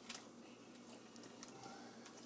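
Faint handling sounds: a few scattered small clicks and crinkles as hands work a raw turkey in a disposable foil pan, over a low steady hum.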